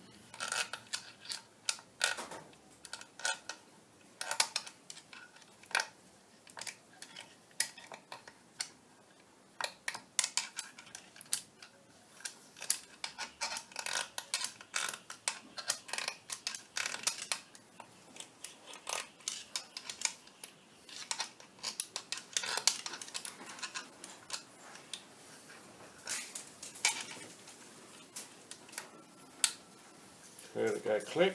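Irregular light metallic clicks, taps and scrapes of a steel circlip and a hand tool against a gear shaft in a lathe apron, as the circlip is worked along the shaft into position.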